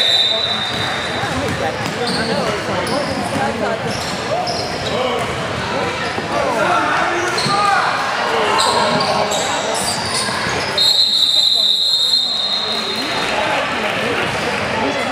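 Youth basketball game in a gym: indistinct shouts and chatter from players and spectators, echoing in the large hall, with a basketball bouncing on the hardwood floor. A high, steady tone sounds for about two and a half seconds near the end.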